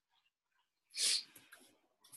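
A person sneezing once into a hand, a short sharp burst about a second in.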